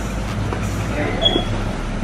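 A steady low hum that drops away near the end, with faint voices in the background.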